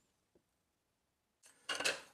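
Near silence, then a man's voice begins near the end.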